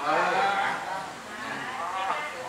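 A man's voice speaking Thai through a headset microphone, with drawn-out, gliding vowels that are loudest in the first second.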